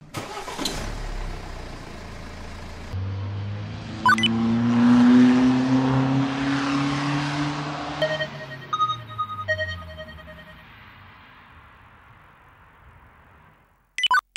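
Car engine sound effect: an engine revs up and drives past, its pitch sliding down, with a sharp click about four seconds in and two short beeps around nine seconds in, then fades away.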